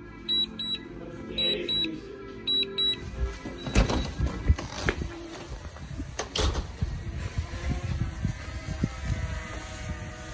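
DJI drone remote controller beeping: about six short, high beeps in quick pairs while the drone lands automatically on return-to-home. Then handling and knocking noise as the controller is carried, with a faint drone propeller hum coming in near the end.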